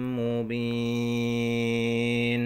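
Quran recitation in melodic tajwid style: the reciter holds one long, steady note at the end of a verse, with a small step in pitch about half a second in.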